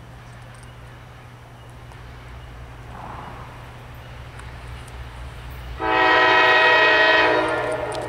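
CSX diesel locomotive's air horn sounding one long blast of several tones at once, starting abruptly about six seconds in and fading near the end. Under it the low rumble of the approaching locomotives' diesel engines builds.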